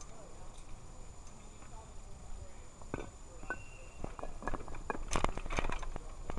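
Street sound heard from a moving bicycle: faint voices of people nearby over a low rumble, then a run of sharp clicks and rattles from about three seconds in, loudest around five seconds, with a brief steady high tone among them.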